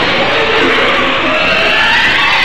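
Loud, dense cartoon action soundtrack: dramatic music mixed with noisy sound effects, with a slow rising tone in the second half.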